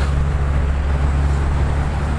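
A motor vehicle running on the road nearby: a steady, loud low rumble with a low engine hum under it, easing off near the end.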